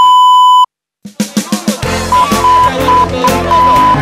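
A loud, steady censor bleep lasting under a second, covering a swear word, cuts off into a second of dead silence. Then music with a drum kit and bass starts up, with short pulses of the same bleep tone worked into the beat.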